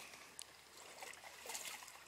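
Quiet outdoor background hiss with no clear source, broken by one faint click about half a second in.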